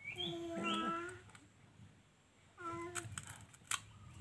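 A baby's high-pitched vocalising: one sound about a second long at the start and a shorter one a little before the end, then a few sharp crunches as it bites into a cracker.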